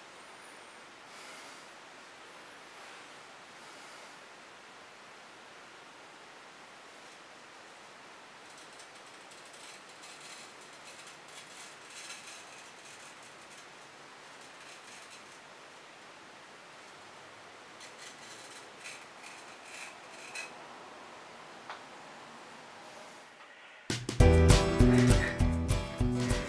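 Faint scraping and rustling of a sharpened knife blade cutting through beard whiskers, over a low hiss. Near the end, loud acoustic guitar music cuts in.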